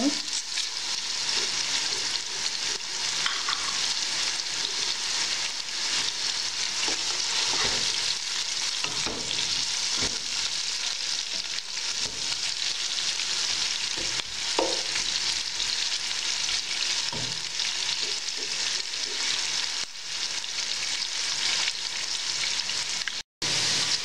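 Sliced onions and whole spices frying in hot oil in a pot: a steady sizzle, with a wooden spoon stirring and scraping against the pot now and then. The onions are being browned to golden brown. The sound breaks off for a moment near the end.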